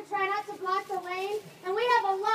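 A young child's voice talking in short, high-pitched phrases.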